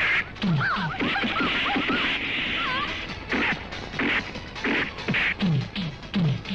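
Film fight-scene soundtrack: a run of punch and slap sound effects, each a sudden hit, some with a short falling thud, laid over background music.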